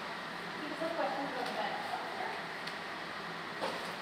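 Indistinct voices of people talking, over a steady hiss of background noise, with one sharp click near the end.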